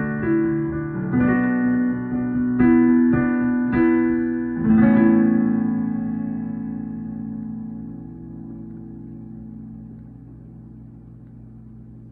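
Digital piano playing a slow closing phrase: about six chords struck in the first five seconds, the last one held and left to ring, fading away gradually.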